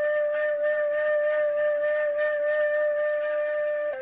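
Background music: one long, steady flute note held unbroken over a faint backing.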